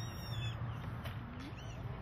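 Outdoor background: a steady low hum with a few faint, brief bird chirps.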